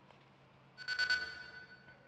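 A short bright chime, a news-broadcast transition sting, strikes about a second in and rings out, fading over about a second.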